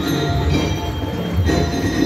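Marching band music: held, ringing bell-like notes over a steady drum pulse, accompanying a majorette routine.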